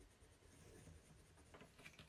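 Faint scratching of a coloured pencil rubbing colour onto a wooden spoon, with a few light strokes near the end.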